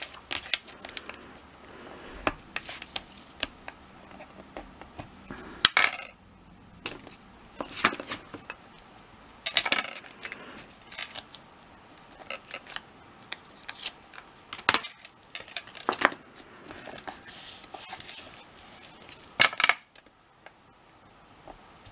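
Craft tools tapping, clicking and scraping on card and a cutting mat as the corners of a card-covered chipboard piece are pushed in with a bone folder and a metal stylus. The sharpest clicks come about six seconds in, near the middle, and just before the end.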